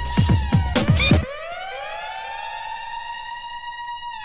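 Flash house electronic dance track: the drum beat cuts out about a second in, leaving a siren-like synth tone that rises slowly and then holds steady.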